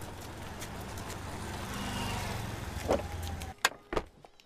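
An SUV's engine running as it drives slowly closer, growing louder toward the middle before it cuts off suddenly near the end. Two sharp knocks follow.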